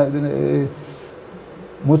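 A man's drawn-out hesitation filler, a steady hummed vowel held on one pitch for under a second. It is followed by a quiet pause of room tone, and he starts speaking again at the very end.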